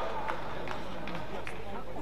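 Indoor badminton hall between rallies: a low murmur of voices and hall hum, with a few faint scattered claps as the applause dies out.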